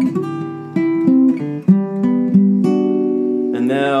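Steel-string acoustic guitar picked note by note, about six plucks left ringing into one another, sounding out the root and major third of a G chord voicing. A short spoken word comes in near the end.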